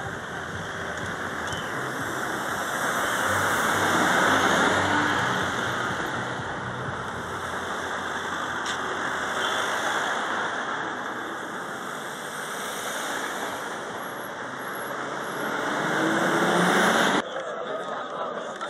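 Coach buses and a van driving past in road traffic: a steady rush of engine and tyre noise that swells as vehicles pass close, about four seconds in and again near the end, then cuts off suddenly.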